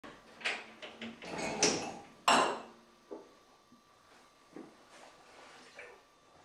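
Kitchen clatter as a dishwasher door is opened and its racks and dishes are handled: a burst of knocks and clunks with the loudest clunk a little over two seconds in, then a few lighter, spaced-out knocks.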